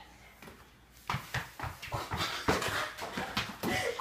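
Irregular thuds and taps of a mini basketball dribbled on a hardwood floor, mixed with the players' footsteps, starting about a second in.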